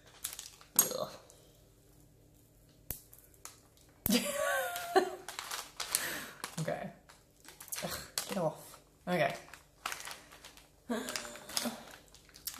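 A knife scraping and prying candle wax and broken glass out of a jar, with sharp clicks and scrapes, the strongest about a second in. From about four seconds in, a voice makes wordless murmurs and hums over the scraping.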